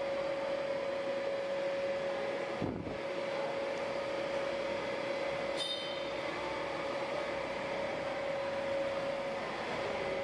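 Two-layer blown film extrusion line running: a steady machine drone with a constant mid-pitched hum. A brief low thud comes about three seconds in, and a short high squeak near the middle.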